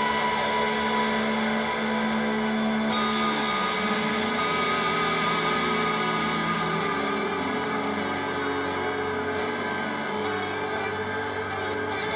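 Ambient electric guitar music: layered, sustained guitar tones and drones shaped through effects pedals, with the pitch bending down and back up about three and a half seconds in.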